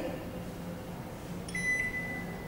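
Glen GL 672 built-in microwave's touch control panel giving one long, steady high beep, starting about one and a half seconds in, as a button is pressed to start setting the clock.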